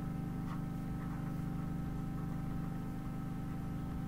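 Steady low electrical hum with a few thin, faint whining tones above it: the background noise of the recording setup. A few faint ticks in the first second or so come from the pen writing on the board.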